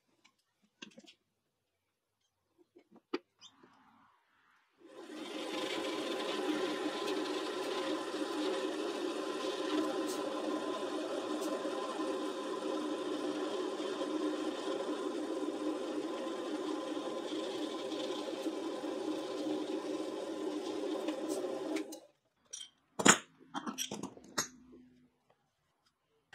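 Drill press motor starting about five seconds in and running steadily for about seventeen seconds while drilling a hinge dowel hole in the hardwood box side, then stopping. A few faint clicks come before it, and a few sharp clicks and knocks follow as bar clamps are set on the box.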